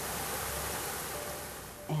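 A small stream rushing and splashing over rocks: a steady hiss of running water.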